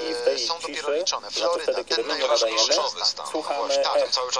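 Speech from a radio broadcast: a voice talking on without pause, with the upper treble cut off.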